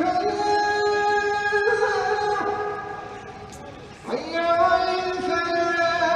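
Islamic call to prayer (adhan) sung by a muezzin: long held, ornamented phrases, one fading out about three seconds in and the next rising in at about four seconds.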